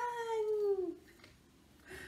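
A woman's voice calling out a long, falling 'bang!' as the sound effect in a children's counting rhyme, dying away about a second in.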